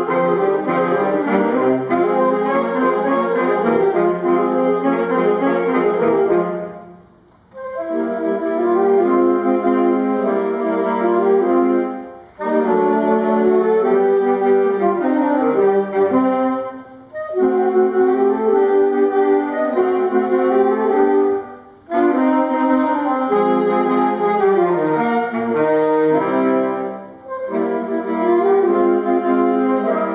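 Saxophone ensemble playing a slow classical arrangement in several parts, in phrases of about five seconds with brief breaks between them; the longest break comes about seven seconds in.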